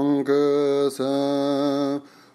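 A male voice chanting a Tibetan Buddhist prayer to Tara in long, steady held notes, breaking briefly twice.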